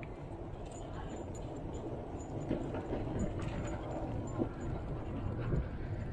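Steady rumble of wind and bicycle tyres rolling on pavement during a ride, with light intermittent metallic jingling.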